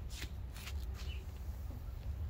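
Outdoor garden ambience: a steady low rumble with light rustling and a few clicks, and one faint short bird chirp about two thirds of a second in.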